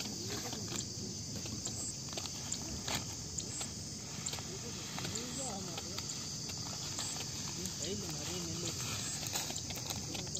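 Plastic water bottle and plastic bag being handled, with scattered light crinkles and clicks, over a steady drone of insects. A faint voice-like sound comes twice in the second half.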